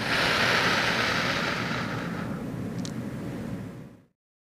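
A woman's long, slow exhale through pursed lips, a calming breathing exercise, heard as a breathy hiss close on a clip-on microphone that gradually fades away over about four seconds.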